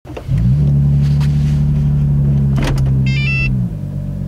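A car engine running inside the cabin. Its steady hum rises in pitch about half a second in and drops back near the end. There is a click, then a short electronic chime from the dashboard.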